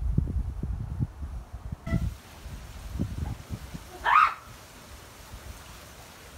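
Wind buffeting the microphone outdoors, irregular low rumbling gusts strongest in the first half. About four seconds in there is one short, sharp call.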